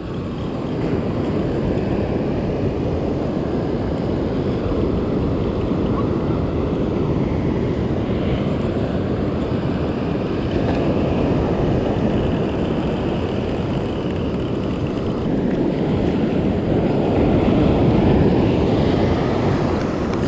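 Steady rush of wind buffeting the microphone together with breaking surf, swelling and easing slowly.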